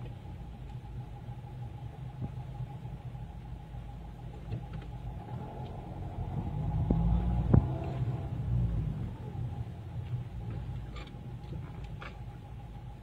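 Car cabin road and engine rumble while driving slowly in traffic, with a faint steady hum over it. The rumble swells for a couple of seconds past the middle, with one sharp click at its peak.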